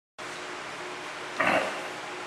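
Steady room hiss of a classroom recording, with one short vocal sound from a man, a grunt or throat-clearing, lasting under half a second about one and a half seconds in.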